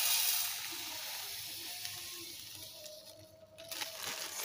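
Granulated sugar poured in a stream into a metal pan, a grainy hiss that is loudest at first and fades out after about three seconds as the pour ends.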